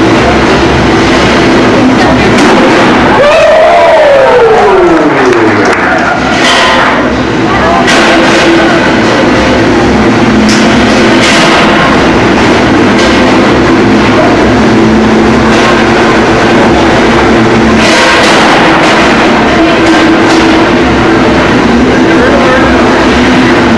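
Arena noise during a combat robot fight: crowd voices and music over steady machine noise. A whine falls steeply in pitch about three seconds in, and several sharp clanks of impacts come later.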